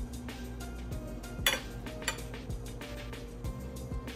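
Background music with a steady low beat, with a fork clinking against a plate once about a second and a half in and again lightly half a second later.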